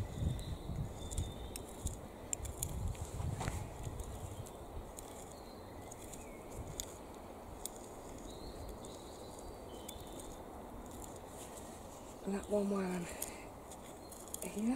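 Outdoor garden ambience with a few faint, short bird chirps, and low wind rumble on the microphone during the first few seconds.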